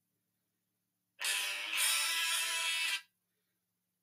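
A snippet of recorded music plays for about two seconds, starting about a second in and cutting off abruptly.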